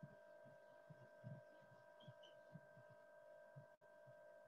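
Near silence: faint room tone with a steady electronic hum of several pitches and soft, irregular low thumps.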